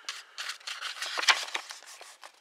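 Paper rustling and crackling as the pages of a small printed pamphlet are handled and turned, with a series of quick scraping strokes and one louder crinkle a little past halfway.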